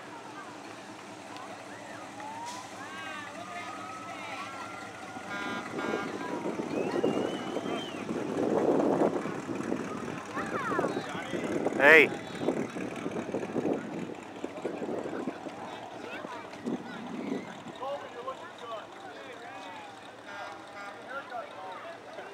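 Street parade ambience: scattered voices of onlookers and a vehicle passing, loudest about seven to ten seconds in. A short, loud, high-pitched sound stands out about twelve seconds in.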